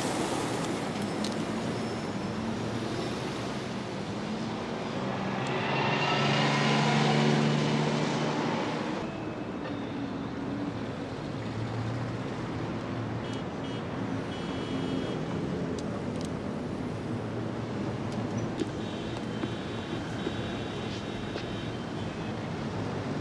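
City street traffic: a steady bed of road noise, with one louder vehicle passing about six to nine seconds in, its low engine note swelling and fading.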